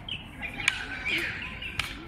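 A bird calling in short, high, wavering phrases, with two sharp clicks about a second apart.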